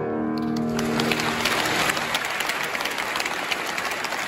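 A final piano chord rings and fades out as an audience starts applauding about half a second in, the clapping then running on steadily.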